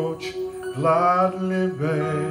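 A man singing a slow hymn, holding long notes with vibrato over a sustained accompaniment.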